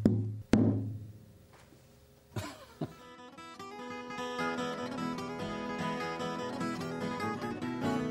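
Two knocks on the body of an unfinished acoustic guitar, about half a second apart, each followed by a low booming hum from the air chamber resonating inside the box. About two and a half seconds in, strummed acoustic guitar music starts and fills the rest.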